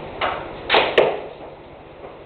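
Street-hockey shots in a concrete basement: three sharp hits within about a second, the last two loudest and close together, from a hockey stick striking the ball and the ball striking the goalie's pads.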